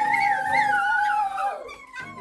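Children screaming with excitement in a long, high-pitched held yell that wavers and drops away in a falling glide about three-quarters of the way through, over background music.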